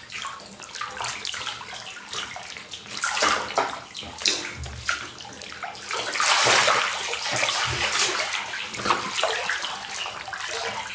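Water splashing and sloshing in a full bathtub as a body moves through it, in irregular bursts, loudest about six seconds in.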